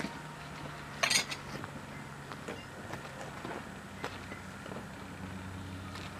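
Outdoor background with a steady low hum and a single brief metallic clink about a second in, then a few faint ticks.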